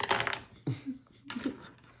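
Small plastic shape blocks clicking and clattering against a plastic shape-sorter ball and a hard tabletop: a sharp clatter at the start and a few more clicks about a second and a half in, with brief short voice sounds between them.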